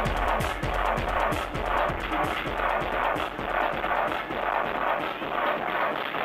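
Loud electronic dance music from a DJ set over a club sound system, with a steady kick drum about twice a second. The deepest bass thins out near the end.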